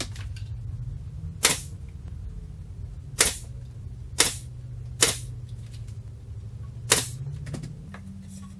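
Pneumatic nail gun firing five times at uneven intervals, each shot a sharp crack, as it fastens the sides of a wooden drawer box. A steady low hum runs underneath.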